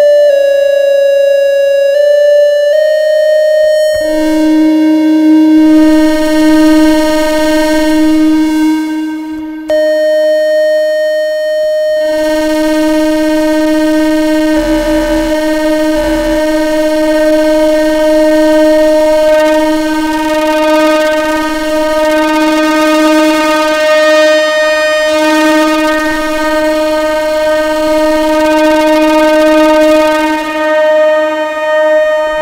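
Neutral Labs ELMYRA drone synthesizer in chromatic mode: for the first few seconds one oscillator jumps in discrete pitch steps rather than gliding. A lower oscillator then joins, and the two hold a steady drone about an octave apart, with the upper tone dropping out briefly before coming back.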